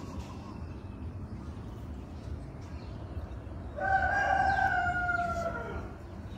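A rooster crows once: a single long call of about two seconds, starting about four seconds in, over low steady background noise.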